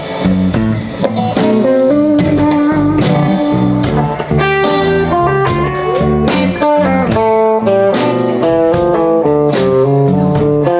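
Live blues band playing an instrumental stretch: electric guitars over a drum kit keeping a steady beat, with a single-note guitar lead line stepping up and down through the melody.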